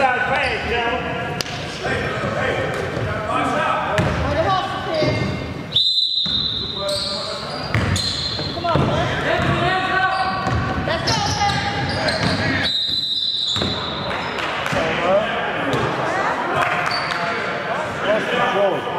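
Basketball game in an echoing gymnasium: a ball bouncing on the hardwood court under shouting and chatter from players and spectators. Two short blasts of a referee's whistle, one about a third of the way in and one about two-thirds of the way in.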